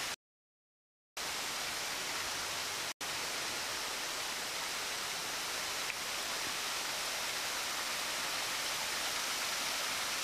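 Steady rush of water spilling over a low concrete weir. The sound cuts out completely for about a second right after the start, and again for an instant about three seconds in.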